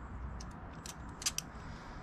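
A few light metallic clicks and ticks from hand tools and small metal parts being handled. The two loudest come close together just past the middle. They sit over a steady low hum and hiss.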